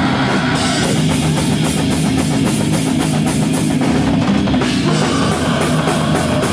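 Hardcore band playing live: heavy guitars and bass over fast, dense drumming on a full drum kit.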